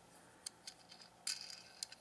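A few faint plastic clicks and a brief scrape as LEGO pieces are handled: the hinged fold-out weapon mounts on a small LEGO boat being moved.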